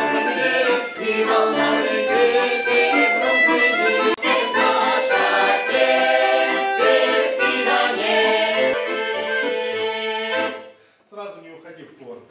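Accordion playing a folk tune with a group of women's voices singing along. The music stops abruptly about ten and a half seconds in, and a man's voice follows near the end.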